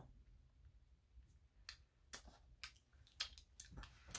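Near silence: room tone with about eight faint, short clicks scattered through it.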